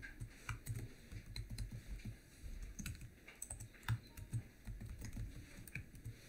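Computer keyboard typing: faint, irregular keystroke clicks as a short line of text is typed.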